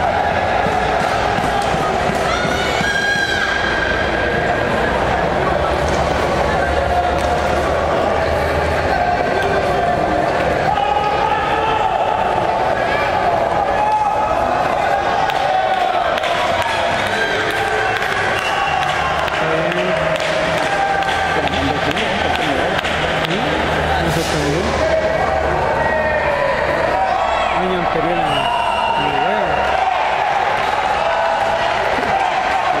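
Crowd of spectators and coaches at a karate kumite bout, many voices talking and shouting over one another, with no single voice standing out.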